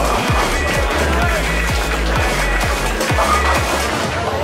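Background music with a heavy, booming bass beat.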